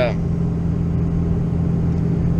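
Steady low drone of a running vehicle, heard from inside its cab, with a constant low hum throughout.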